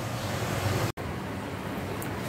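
Steady background hiss-like noise with no distinct events, broken by a sudden brief dropout just under a second in where the recording is cut.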